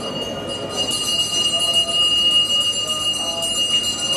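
A metal bell ringing steadily, a high ringing with several overtones that starts about a second in and keeps going.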